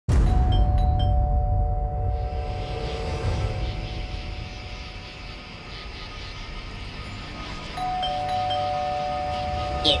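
Two-tone doorbell chime ringing ding-dong, once just after the start and again about 8 s in, each pair of tones held and slowly dying away over a low rumble.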